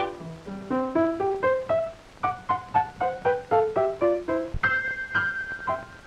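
Piano notes in a cartoon score, played one at a time at about three or four a second in a melody that steps up and down, in time with characters walking across the keys. Near the end a high note is held for about a second over the piano.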